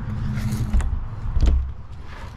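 A motorhome's exterior storage-bay door being lifted open: creaking and handling noise, with two knocks, the louder one about a second and a half in.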